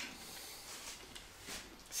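Faint handling of a rough juniper board: a hand rubbing over the wood, with a couple of soft knocks.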